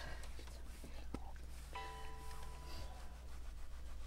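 Quiet room tone with a steady low hum and a man's soft breathing as he pauses mid-sentence, holding back emotion. Faint held musical tones come in about two seconds in and fade out near the end.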